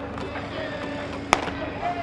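One sharp pop of a pitched baseball hitting the catcher's mitt, about a second and a half in, over faint chatter of players' voices.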